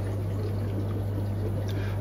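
Aquarium sponge filters bubbling: a steady stream of air bubbles rising and breaking at the water surface, over a steady low hum.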